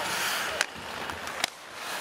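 Ice hockey play sounds in an arena: a hiss of skates scraping the ice, then two sharp clacks of the puck about a second apart, over steady crowd noise.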